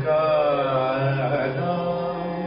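A male voice singing Gurbani kirtan in a long, gliding melodic line, accompanied by bowed dilrubas.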